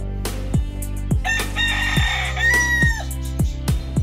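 A bantam rooster crows once, a call of about two seconds starting just over a second in and ending on a falling note. Background music with a steady drum beat runs underneath.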